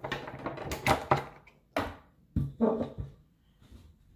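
Handling noises close to the microphone: several sharp knocks and clatters with rustling as objects are set down and picked up, busiest in the first three seconds, then dying down.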